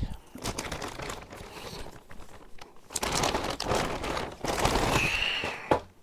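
Clear plastic bag crinkling and rustling as it is opened and a coiled antenna cable is pulled out of it, louder in the second half.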